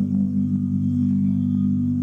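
Recorded gospel music: a low chord held steady.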